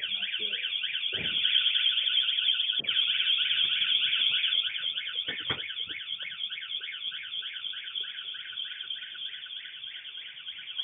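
VanGuardian van alarm going off: a loud electronic siren that starts suddenly and warbles rapidly up and down in pitch, triggered by intruders at the van. It eases off somewhat about halfway through, with a few dull knocks beneath it.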